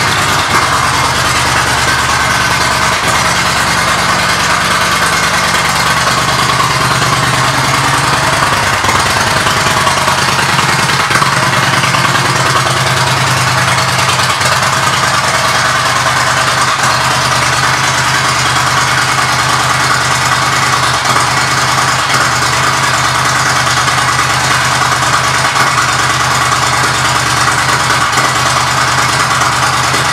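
Yamaha V Star 950's air-cooled V-twin idling steadily through its aftermarket Cobra exhaust.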